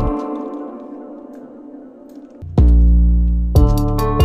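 Playback of a melodic trap beat: a keys chord rings out and fades. A bit over halfway through, a deep distorted 808 bass hit lands and slides down in pitch. A second 808 hit and quick hi-hat ticks come in near the end.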